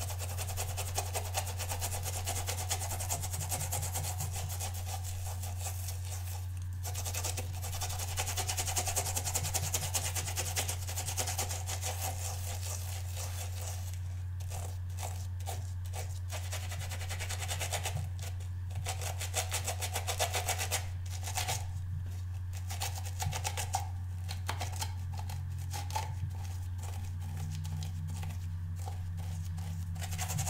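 A wet watercolour brush scrubbed rapidly back and forth over the ridges of a silicone brush-cleaning pad, pausing briefly about a quarter of the way in, then slowing to separate strokes in the second half. A steady low hum runs underneath.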